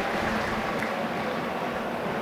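Steady crowd noise from a football stadium's stands, a continuous even hum of many voices with no single voice standing out.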